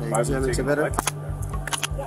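Steel handcuffs ratcheting shut on a man's wrists: one sharp click about halfway through and a few quick clicks near the end, under a voice and background music.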